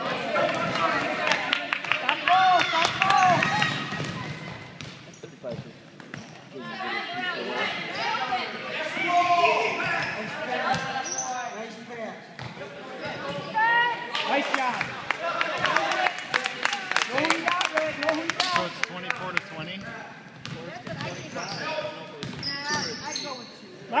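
A basketball bouncing again and again on a hardwood gym floor as it is dribbled, with a steady mix of shouting and talking voices from players and spectators around it.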